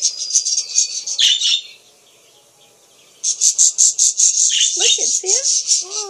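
Budgerigars chirping in a rapid, evenly repeated run of high chirps, about six a second. The run stops for about a second and a half in the middle, then starts again and carries on.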